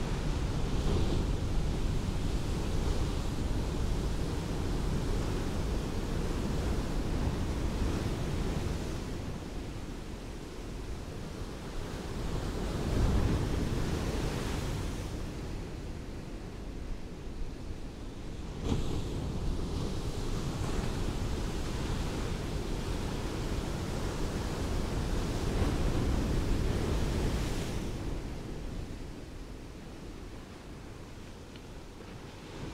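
Ocean surf washing onto a beach: a steady rush of breaking waves that swells and ebbs in several surges, one starting sharply a little past the middle, and dies down near the end.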